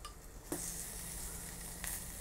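Bacon sizzling as it fries in an earthenware ttukbaegi clay pot, a steady high hiss that starts suddenly about half a second in, with a light click near the end.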